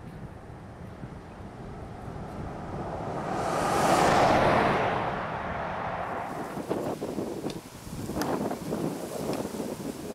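A vehicle passing along the road: tyre and engine noise swells to a peak about four seconds in and then fades away, with wind rumbling on the microphone.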